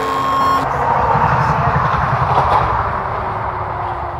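Experimental electronic music: held tones stop shortly after the start, giving way to a dense hiss of noise that swells in the middle and eases off, over a low fluttering rumble.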